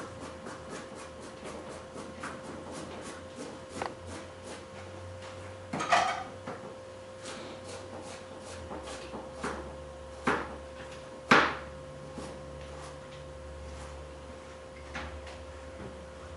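Knife slicing carrots into rounds on a cutting board, a quick run of light taps, with a few louder knocks and clatters about six, ten and eleven seconds in, over a steady hum.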